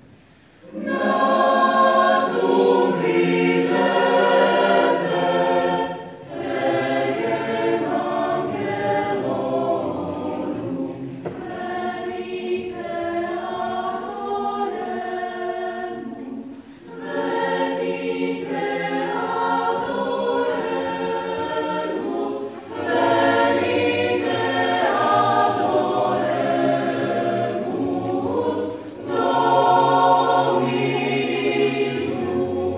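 Mixed choir of men and women singing in parts, in several phrases with brief pauses between them.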